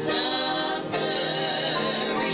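A small mixed group of women and a man singing a gospel song together into microphones, holding long sustained notes.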